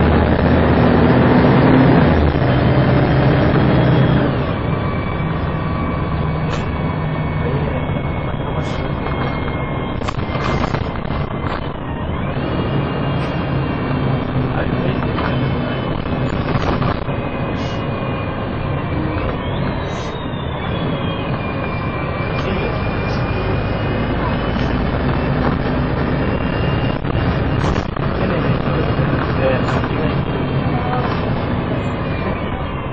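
MAN 18.220LF single-deck bus's diesel engine and driveline heard on board while it drives. The engine is loudest for the first four seconds, then eases to a steadier pull. A high whine slides slowly up and down in pitch, with occasional knocks and rattles.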